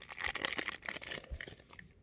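Plastic candy wrapper crinkling as it is handled, a dense crackle that thins out near the end.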